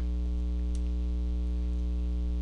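Steady electrical mains hum, a buzz with many evenly spaced overtones, running under the recording, with one faint click about three-quarters of a second in.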